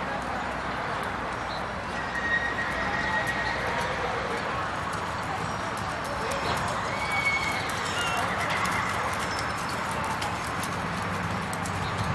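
Hoofbeats of a Criollo horse galloping on arena sand, with faint voices in the background.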